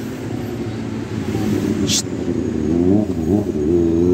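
Motor vehicle engines running in nearby street traffic, one rising in pitch about three seconds in as it accelerates, with a sharp click about halfway through.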